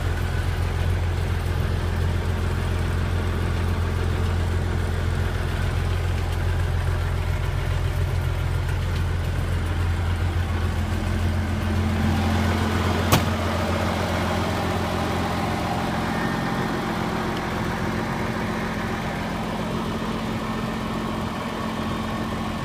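Diesel engine of a White truck idling steadily, heard first from inside the cab. About halfway through, the deep low hum drops away and a higher steady engine note comes forward as the sound moves out of the cab, with one sharp click just after.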